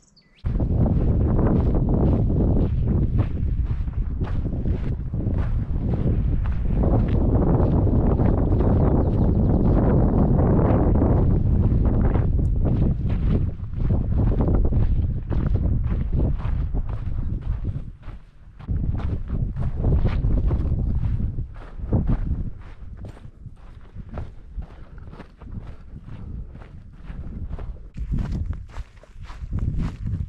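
Wind buffeting the microphone with a heavy low rumble for the first half, then a hiker's footsteps on a dry dirt trail in a steady walking rhythm.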